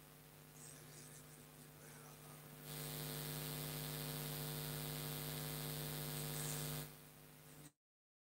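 Steady electrical mains hum with many overtones from the public-address system. About three seconds in it grows louder, with a hiss added, then drops back near seven seconds. Just before the end the sound cuts out entirely for a moment.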